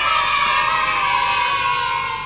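Children's voices cheering in one long held shout, a cheer sound effect laid over the picture, tailing off near the end.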